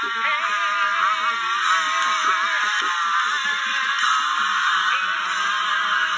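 A person's voice raised in loud, sung prayer, drawn out into long, wavering held notes.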